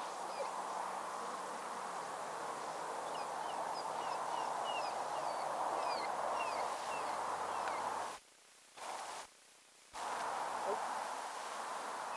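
Steady rushing outdoor background noise with a bird calling in short, high, falling chirps through the first two-thirds. The sound cuts out twice for about half a second each near the end.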